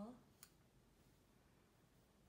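A single short computer mouse click, then near silence.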